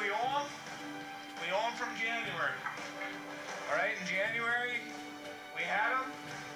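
Indistinct voices in short bursts over steady background music with a low held note, heard as television broadcast audio.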